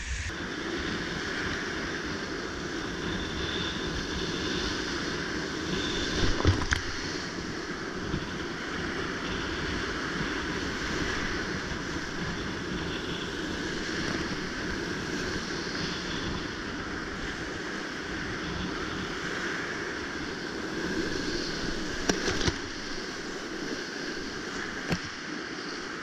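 Steady rush of big whitewater rapids on a river in high flow, heard close up from the kayak, with a couple of sharp splashes or knocks about six seconds in and near the end.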